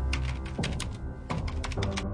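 Typewriter-style keystroke sound effect, a run of irregular quick clicks as on-screen text is typed out, over background music with steady held low notes.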